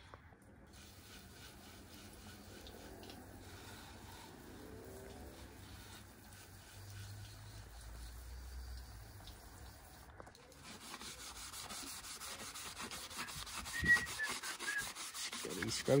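Green Scotch-Brite pad scrubbing the wet bare aluminium frame of a dirt bike, in quick repeated back-and-forth strokes that start about ten seconds in. Before that there is only faint low sound.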